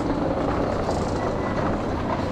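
Steady background rumble and hiss of a store's indoor ambience, with no distinct single event standing out.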